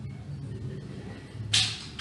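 A pause in narration: a low, steady background hum, with a short hiss about a second and a half in.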